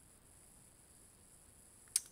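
Near silence of faint room tone with a steady high hiss, broken by one sharp, brief click just before the end.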